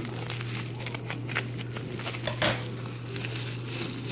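Clear plastic bag and packaging crinkling and crackling as items are rummaged through by hand, in irregular bursts with a louder crackle about two and a half seconds in, over a steady low hum.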